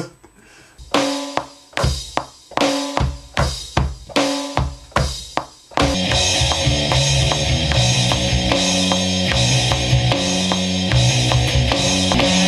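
A drum kit plays an intro of separate ringing hits, about two to three a second. About six seconds in, the full band comes in loud, with bass notes under the drums.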